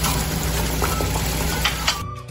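Batter-coated raw plantain slices frying in hot oil: a steady sizzle with a few sharp clicks, the loudest near the end, over a low steady hum.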